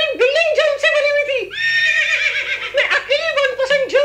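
A high-pitched comic voice, warbling up and down in quick arches several times a second, breaks into a shrill held note for about a second midway.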